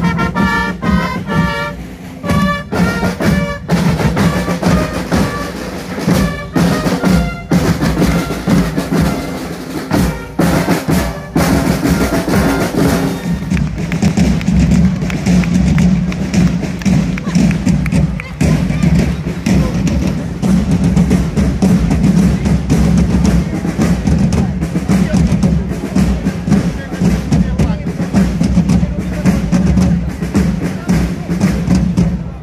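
Long straight herald trumpets playing a brass fanfare in held notes. About three seconds in, drums start beating. From a little over ten seconds in, the drums play on their own in a steady, continuous roll and beat.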